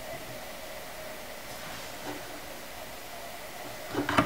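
Steady low hiss with faint handling noise as a hanger is moved on a desk, and a short light knock near the end as it is picked up.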